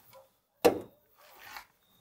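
Olight Baton 3 Pro flashlight's magnetic tail cap snapping onto a metal surface: one sharp click a little after half a second in, followed by a fainter rustle of handling.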